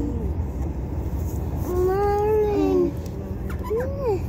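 A pet's long, drawn-out whining call, about a second long and a little past halfway through, over the steady road and engine rumble inside a moving car.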